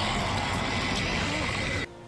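Dense action-scene soundtrack from a TV show, a mix of rumble and noise with a steady high tone, cutting off abruptly near the end.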